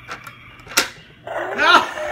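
Plastic game tongs clicking once against the Dino Meal egg pit, followed in the second half by a short, loud voice-like cry that rises and falls in pitch.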